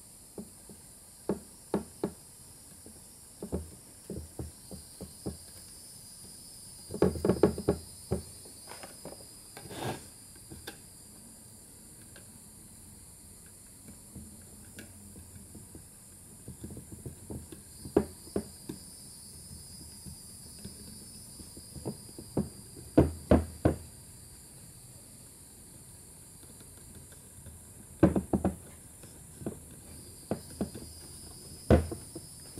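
Rubber intake manifold gaskets being pressed by hand into the manifold's grooves: scattered light knocks and clicks of fingers and parts on the manifold and bench, loudest in clusters about seven seconds in, around twenty-three seconds and near the end, over a faint steady hiss.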